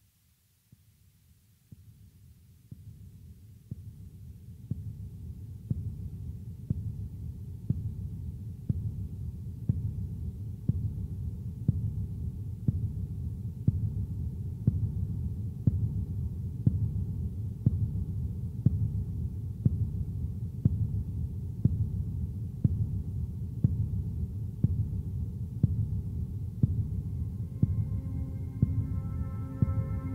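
Intro soundtrack of a deep, heartbeat-like pulse, about one and a half beats a second, over a steady low drone, fading in over the first few seconds.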